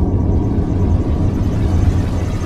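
Logo-intro sound effect: a loud, deep rumble of noise with most of its weight in the bass, building slightly toward the end.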